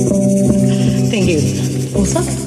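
Small live jazz band (female voice, archtop acoustic guitar and upright bass) holding a long sustained chord, with a falling slide about a second in.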